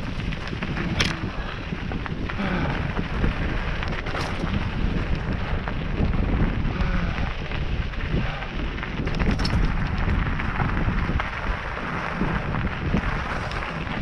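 Hardtail mountain bike rolling over a gravelly dirt trail: a steady rumble and crunch of tyres on loose gravel, mixed with wind on the microphone. A few sharp knocks sound as the bike jolts over rocks, at about one, four and nine and a half seconds in.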